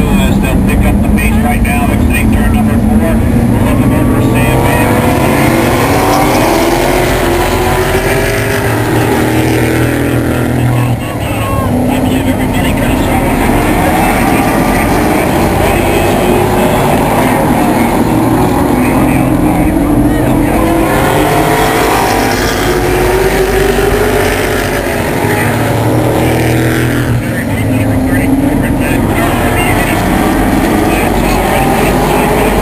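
A pack of late model stock cars racing on a paved oval, many V8 engines running together. Their pitch rises and falls in repeated swells as the cars accelerate down the straights and lift for the turns.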